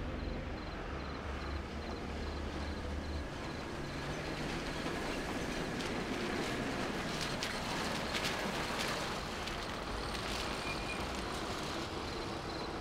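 An old sedan's engine runs steadily as the car drives up and pulls to a stop, with tyre noise on the road. A few sharp ticks come in the second half.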